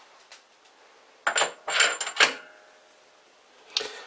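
Steel Morse-taper arbor clinking against the lathe's headstock spindle as it is put into the taper: three sharp metallic clinks about a second in, the last one ringing briefly, and a lighter click near the end.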